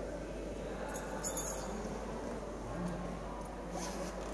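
Hall ambience of a waiting audience: a low, steady background of murmur and shuffling, with a brief sharp sound about a second in.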